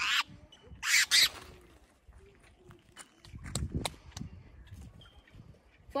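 Caatinga cachalote gives a brief harsh squawk, two quick rasping bursts about a second in, as it is let go from the hand. Quieter low rustling and a few knocks follow midway.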